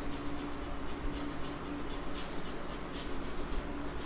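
Chalk writing on a chalkboard: a string of short scratchy strokes as letters are written by hand, over a steady low hum.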